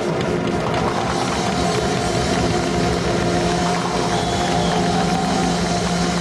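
A live orchestra playing, with sustained held notes; a long low note comes in about two seconds in and is held to the end.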